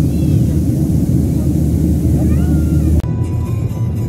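Steady low roar of a jet airliner's cabin in flight, with a couple of faint high gliding calls over it. About three seconds in it cuts sharply to the quieter rumble inside a moving car, with a steady tone and music starting.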